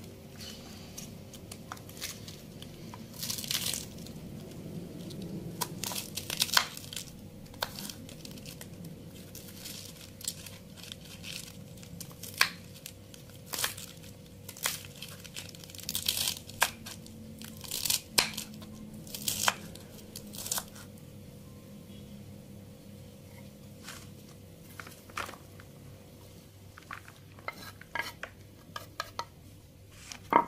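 Kitchen knife chopping cabbage on a wooden cutting board: irregular sharp knocks of the blade on the board, with crinkling and tearing of the cabbage leaves as they are handled.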